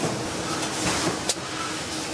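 Steady factory machinery noise, with a sharp click about a second and a half in.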